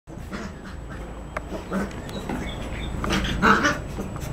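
Two yellow Labrador retriever puppies play-fighting, making short growling and yipping sounds, loudest about three seconds in.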